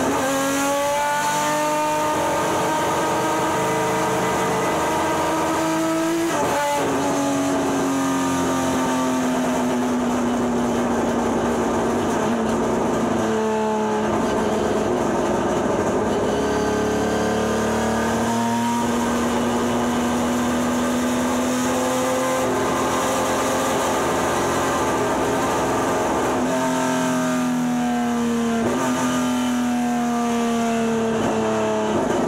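Nissan Frontier race pickup's engine at racing speed, heard from inside the cockpit: long pulls with the pitch slowly climbing, broken about five times by sudden lifts and gear changes where the pitch drops and then climbs again.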